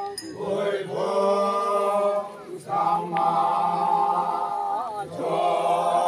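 A group of men singing a chant together in unison, holding long notes, with short breaks for breath about two and a half and five seconds in.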